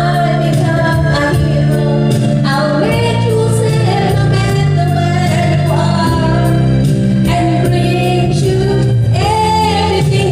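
A woman singing into a handheld microphone over amplified backing music with a steady beat.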